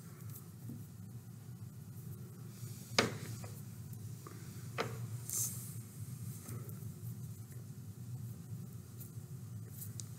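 Faint handling sounds of thread and feathers being knotted by hand, with a sharp click about three seconds in and a couple of softer ticks after it, over a low steady hum.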